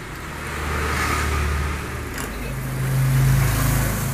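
A motor vehicle's engine running past, its low rumble swelling to loudest about three seconds in, with a single light click about two seconds in.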